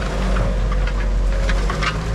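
Tractor engine running steadily, heard from inside the cab, with a few short clicks and knocks in the second half as the disc harrow is lowered hydraulically.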